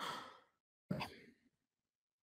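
A faint breathy exhale into a close microphone, fading out quickly, then a brief faint mouth sound about a second in.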